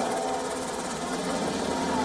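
Helicopter overhead: a steady engine and rotor drone with a fast, even beat.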